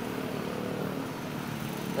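Hyundai Santa Fe's GDI petrol engine idling: a steady low hum.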